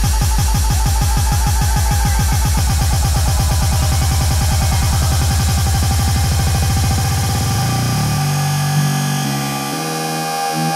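Electronic dance music played live by DJs: a driving beat that speeds up into a roll as a build-up, then breaks off about eight seconds in, leaving held synth chords.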